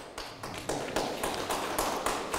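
Scattered audience clapping: an irregular patter of hand claps that starts suddenly and runs on.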